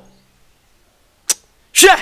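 A short pause, then one sharp click about a second in, followed near the end by a brief voiced exclamation.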